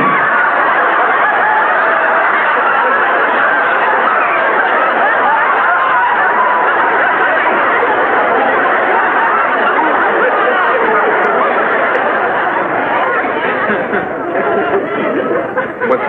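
Studio audience laughter, many people laughing at once in one long, sustained wave that thins out about two seconds before the end.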